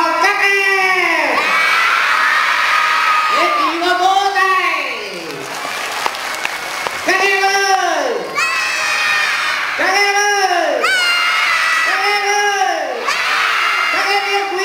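A large crowd of children shouting together in unison. Five long, drawn-out calls, each rising and falling in pitch, come every two to three seconds, with cheering in between.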